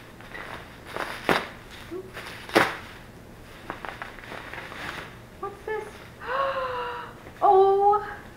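Plastic bubble wrap rustling and crinkling as it is pulled out of a cardboard box, with a few sharp crackles. In the last few seconds a woman makes short excited wordless voice sounds.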